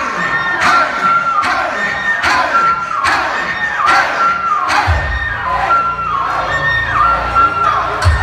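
Hip-hop backing track played live through a concert PA: a repeating high synth riff with a hit about every 0.8 seconds, joined by a heavy bass about five seconds in, with a crowd cheering over it.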